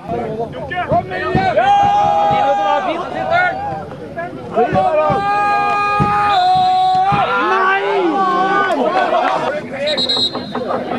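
Football supporters singing a chant, with long held notes in the middle and toward the end.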